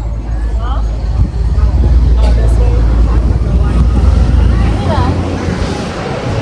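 Low rumble of a vehicle close by in street traffic, loudest through the middle and dropping away sharply near the end, with voices in the background.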